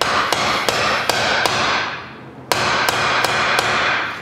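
Hammer striking a metal seal-installer driver to seat a front main seal into a stamped-steel timing chain cover. There are two runs of quick blows, about three a second, with a short pause about two seconds in, and each blow rings.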